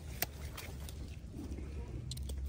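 Grape-picking shears snipping once, a sharp click about a quarter second in, while a bunch of table grapes is cleaned of rotten berries, over a low steady rumble.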